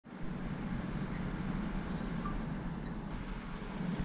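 Steady cabin noise inside a parked truck: an even low rumble with a hiss over it.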